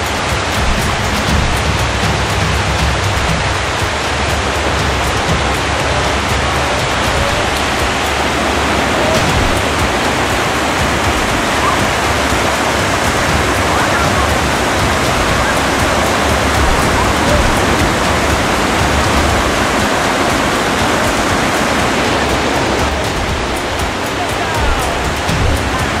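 Whitewater rapids rushing: a loud, steady hiss of churning river water with no let-up.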